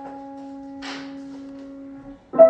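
A grand piano note held on and slowly fading, with a short faint brushing noise a little under a second in.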